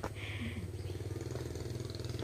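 A motorbike engine idling steadily close by: an even, low, finely pulsing rumble.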